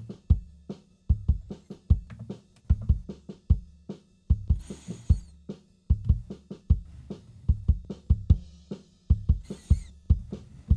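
A band mix playing back from a Cubase project: a drum kit with kick and snare on a steady beat over a bass line, with a cymbal crash about halfway through and another near the end.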